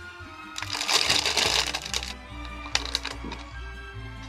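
Plastic cookie bag crinkling as it is handled and opened: a loud rustle lasting about a second and a half, then a shorter crinkle near the three-second mark.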